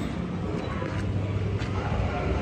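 People climbing a staircase, with a few faint footfalls against a steady low rumble from the moving handheld phone, and faint voices in the background.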